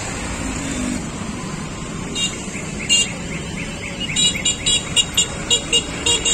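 Steady hum of road traffic. Over it, a bird gives short, sharp high chirps: a couple about two and three seconds in, then a quick run of about eight over the last two seconds.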